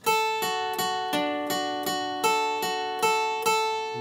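Steel-string acoustic guitar picking the notes of a chord shape held high on the neck, a little under three notes a second in an even rhythm, each note left ringing into the next.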